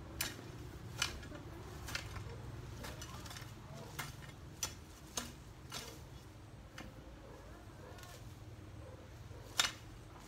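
A hand hoe striking into garden soil in irregular chopping blows, about one a second with some gaps, the sharpest blow near the end.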